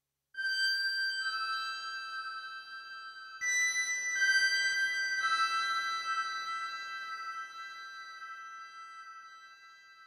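Behringer DeepMind 6 analogue polyphonic synthesizer playing high, sustained notes. A first chord enters about a third of a second in, higher notes join at about three and a half seconds, and all ring on and slowly fade.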